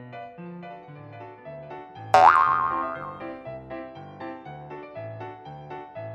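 Background music for a children's cartoon with a stepping bass line. About two seconds in comes a loud cartoon sound effect: a sudden hit whose pitch springs upward and wobbles, then fades within about a second.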